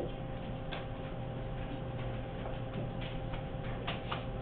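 Quiet classroom room tone: a steady electrical hum with scattered faint clicks and taps at irregular intervals.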